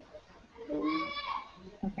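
A person's drawn-out, wavering vocal sound lasting about a second, in the lull after a question, followed near the end by a short spoken "okay".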